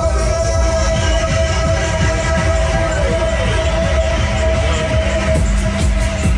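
Loud fairground ride music with a heavy pulsing bass and a long held note.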